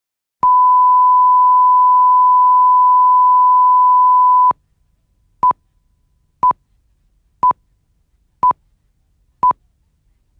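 Broadcast line-up test tone: one steady beep held for about four seconds, then five short countdown pips on the same pitch, one a second, counting down to the start of the news item.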